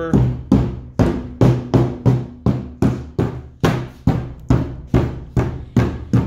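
Claw side of a hammer striking a pine door panel again and again, about two blows a second in a steady rhythm, denting the wood to give it a distressed, aged look.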